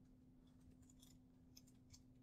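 Near silence: room tone with a faint steady hum and a few faint, short computer mouse clicks.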